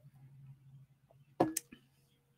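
Ceramic mug set down on a desk with a short clunk about one and a half seconds in, followed by a faint lingering ring, with a man's "okay" at the same moment.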